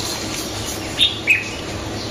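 Two short bird chirps about a second in, a third of a second apart, the second one lower in pitch, over steady background noise.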